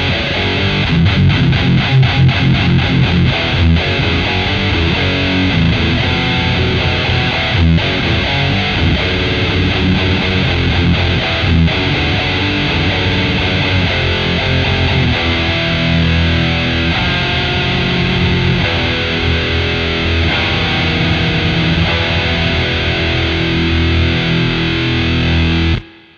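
Les Paul-style electric guitar played through a Walrus Audio Eras distortion pedal into a clean amp: a hard, high-gain distorted riff that plays continuously and stops abruptly at the end.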